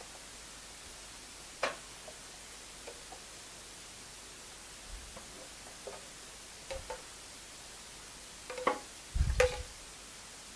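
Metal spoon clicking and scraping against the rim and side of a saucepan while a thick milk and China grass mixture is poured into a glass dish. A few scattered clicks, more frequent near the end, with a heavier knock about nine seconds in.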